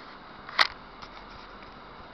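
A single sharp click about half a second in, over the steady hiss of noise inside a moving car.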